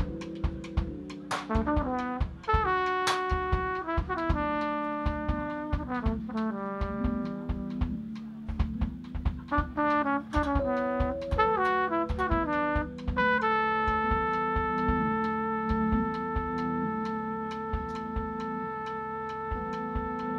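Live jazz-funk band: a trumpet plays a quick run of changing notes over drums and a moving bass line, then holds one long note for the last third.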